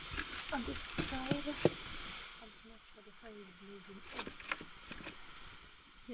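Quiet voices talking, with a few sharp knocks, the loudest about a second and a half in.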